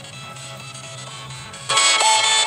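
Background music, fairly quiet at first, stepping up suddenly to a much louder, brighter section near the end.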